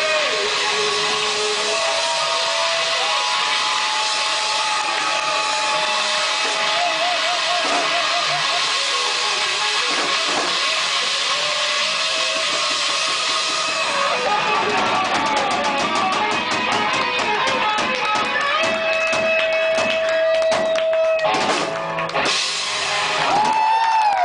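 Live rock band playing the instrumental close of a song. A lead guitar holds long, wavering notes over drum kit and cymbals, which grow denser in the second half, and the band ends on a loud final flourish near the end.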